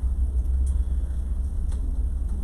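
A steady low rumble, with two faint clicks about a second apart.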